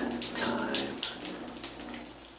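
Water spattering and dripping unevenly in a tiled shower stall: the shower valve is still leaking.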